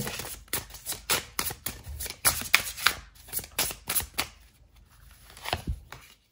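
A deck of tarot cards shuffled by hand: a rapid, irregular patter of card edges clicking and sliding against each other, which thins out after about four seconds. Near the end comes a single louder tap as a card is laid down on the table.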